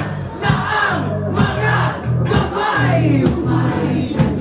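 Live rock band playing while the crowd sings along. The drums and cymbals mostly drop out, leaving sustained bass and guitar notes under the voices.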